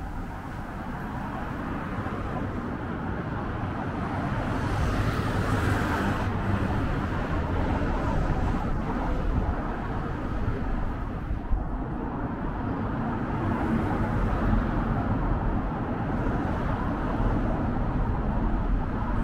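Road traffic on a city street: the steady noise of cars going by, building gradually, with one vehicle passing close about five seconds in and a short click about eleven and a half seconds in.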